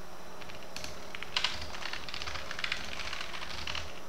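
Typing on a computer keyboard: a quick run of key clicks, starting just under a second in, with brief gaps between bursts of keystrokes.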